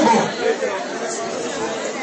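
Speech only: a man says a word at the start, over chatter of several voices in a large room.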